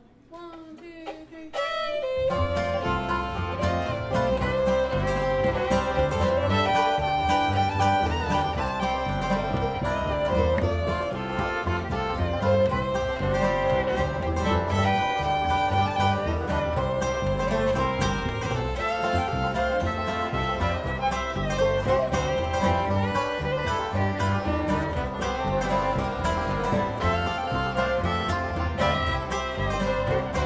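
Live bluegrass band playing an instrumental tune, the fiddle leading over acoustic guitar, upright bass and banjo. A few single notes lead in, and the full band comes in about two seconds in.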